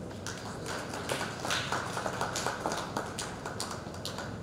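Audience clapping: a short round of scattered applause, the separate claps distinct, starting just after the beginning and dying away near the end.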